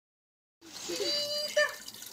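Hands splashing and stirring water in a small garden pond, with a voice calling out over it; the sound begins about half a second in.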